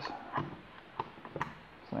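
About four light clicks and taps, spread over a second and a half, as a Benelli M2 trigger group and its trigger pin are worked into a Franchi Affinity shotgun receiver.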